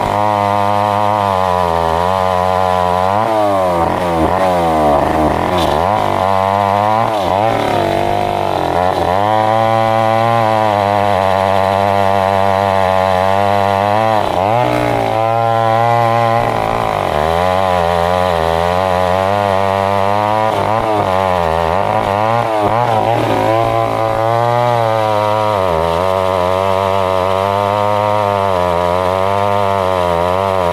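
Two-stroke petrol chainsaw running at high throttle while cutting into a jackfruit log, its engine pitch wavering up and down as the chain takes and eases off the load.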